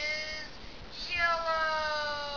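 Two long, high-pitched wailing cries, like a cat's meow: the first trails off about half a second in, the second starts a second in and is held, slowly falling in pitch.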